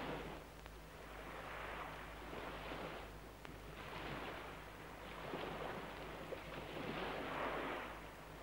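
Cats caterwauling, as in mating season: a run of drawn-out, rasping cries that swell and fade every second or two.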